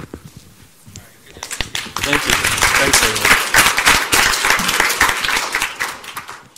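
An audience applauding, starting about a second and a half in and running loud and dense, then dying away at the very end.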